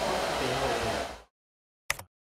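Steady rushing background noise of a blower in a room, with a faint voice under it, cuts off abruptly just over a second in to dead silence. Near the end one short, sharp transition sound effect marks an editing card.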